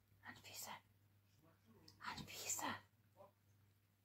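A person whispering softly, two short breathy phrases, the second a little louder.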